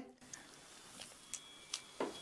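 A few faint clicks of a magnet and a clip-on microphone being handled against a Qi Coil pendant coil, with short, faint, high thin tones coming through in the second half: the coil's output made audible as the magnet is brought to it.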